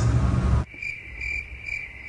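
A low rumble cuts off suddenly about half a second in, giving way to a crickets chirping sound effect: a thin, steady high trill that pulses about twice a second.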